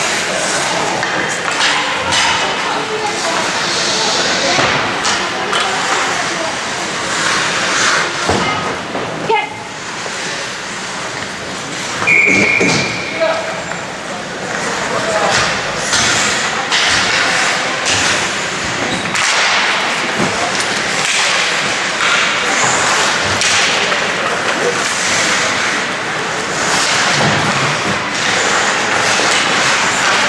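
Ice hockey game in a rink: shouting voices over a steady din, with scattered knocks of sticks, puck and skates on the ice and boards. About 12 seconds in, a short, steady referee's whistle blows play dead.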